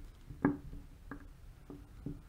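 Three faint, small clicks about half a second apart, the first the loudest, as a bit driver turns the adjusting screw down into a Volvo AW55-50SN transmission shift solenoid.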